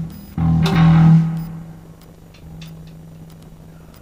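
Music: a low plucked bass guitar note rings out about half a second in and fades, followed by a quieter held low note.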